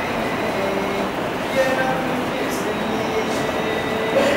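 A naat, Urdu devotional poetry, chanted in long held notes through a public-address system, over a steady rushing noise.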